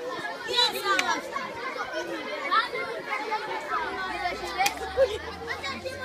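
A crowd of schoolchildren chattering and calling out all at once, many voices overlapping without a break.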